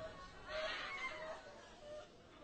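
Faint worship music with voices from the congregation, heard as several short held notes that waver slightly.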